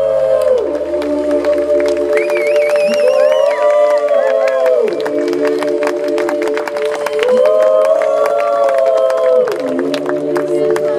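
Live folk-pop band music: two female voices hold a close two-part harmony without words in long phrases that rise and fall about every four seconds, over keyboard and guitar, while the festival crowd cheers and claps.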